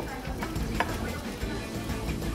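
Chopped beef and onions sizzling in a skillet of hot oil as the meat is scraped in, with a few light clicks, under soft background music.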